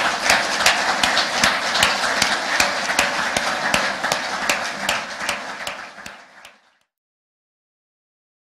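Audience applause, many hands clapping; it thins out and then cuts off suddenly about six and a half seconds in.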